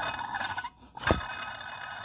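A Dodge Dakota water pump turned by hand at its pulley, giving a steady scraping rasp with a brief break a little past halfway and a sharp click just after. The shaft bearing is loose and wobbling, so the pump's internal parts rub against the aluminium housing: the sign of a failed water pump.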